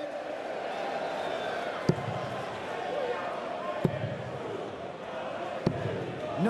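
Three darts striking a Unicorn Eclipse HD2 bristle dartboard, three sharp thuds about two seconds apart, over a steady murmur from a large arena crowd.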